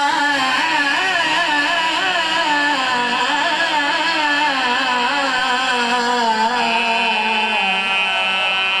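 Several men's voices singing a mournful devotional lament together into microphones, amplified through a PA system. The melody is slow and ornamented, with long wavering notes and one held note near the end.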